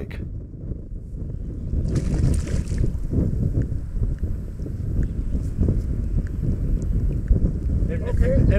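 Wind buffeting an outdoor microphone, a steady low rumble, with a brief hiss about two seconds in.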